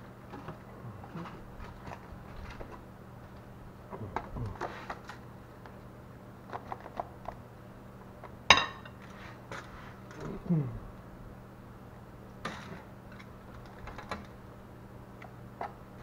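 A spoon and plate clinking and scraping as refried beans are spooned from a glass bowl onto a tortilla on a plate. There is one sharp clink about halfway through and a couple of short falling squeaks, over a faint steady hum.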